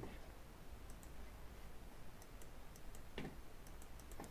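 Faint, scattered clicks from the pointing device as an equation is written on a digital whiteboard, over a low steady hum.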